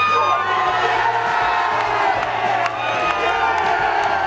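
Rugby league crowd cheering and shouting as players break towards the try line, over background music with a low bass line.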